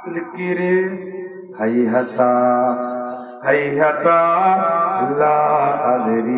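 A man's voice chanting in a melodic, sung style, holding long notes in a few drawn-out phrases with short breaths between them: the preacher's sung delivery of a sermon.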